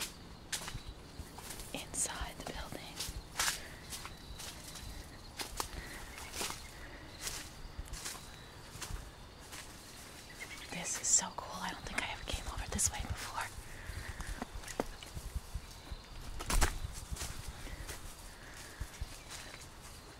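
Footsteps through brush and dry leaves outdoors, with irregular crackles and snaps of twigs and plant stems, and one louder thump about three-quarters of the way through.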